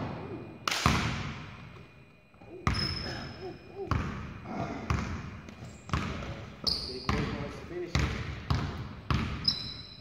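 A basketball knocks against the rim and the hardwood floor twice in the first second. From about three seconds in it is dribbled on the floor about once a second, each bounce echoing around the large gym, with brief sneaker squeaks on the hardwood.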